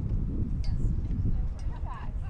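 Wind rumbling on the microphone at an outdoor softball field, with distant voices of players calling out; one short call stands out near the end.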